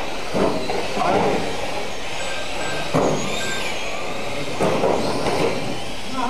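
Small electric RC touring cars with Mini bodies racing on a carpet track: a high motor whine that rises and falls as the cars speed up and slow down, over a steady hiss of tyres on the carpet, with a few short knocks.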